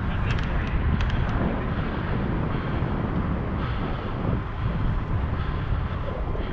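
Wind rushing over the microphone of a bicycle-mounted action camera while riding, mixed with tyre and road noise. There are a few short clicks in the first second and a half.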